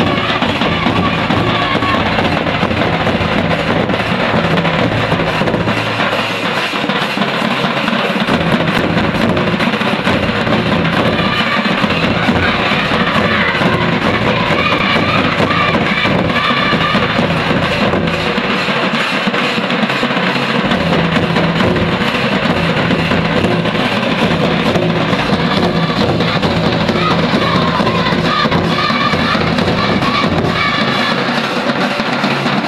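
Live folk drumming: large nagara kettle drums and a mandar barrel drum beating steadily, with voices singing over the drums at times.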